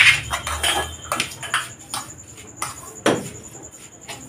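Metal spoon stirring a thick mix of semolina, curd and salt in a stainless steel bowl, giving irregular scrapes and taps against the bowl, with the sharpest knock about three seconds in.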